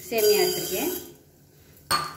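Dry sago pearls pouring from a steel tumbler into a stainless steel pressure cooker, a hissing rattle on the metal base in the first second, under a woman's voice. A single sharp metallic clink near the end.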